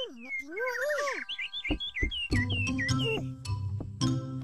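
Bird chirping in quick, repeated short downward whistles. Background music with held notes comes in a little past halfway.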